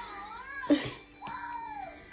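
A baby making two short, high-pitched whining calls, each rising and then falling, wanting the food in front of it.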